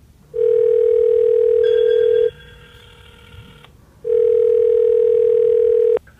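Telephone ringback tone heard from the calling phone: a steady tone rings twice, each ring about two seconds long, with a gap of under two seconds between. It is the sound of the line ringing while the call waits to be answered.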